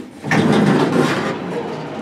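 Dover Oildraulic hydraulic elevator starting up after a floor button is pressed, its machinery setting in about a quarter second in with a steady running noise.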